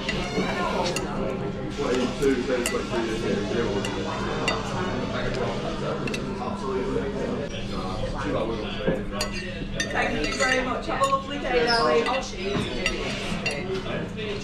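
Metal knife and fork clinking and scraping on a ceramic dinner plate, in many short irregular clicks, as the last of a meal is scraped up.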